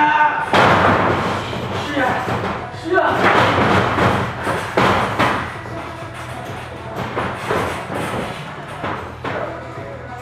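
Background music with singing, and several heavy thuds, about half a second, three seconds and five seconds in, of bodies hitting a wrestling ring's canvas mat during grappling.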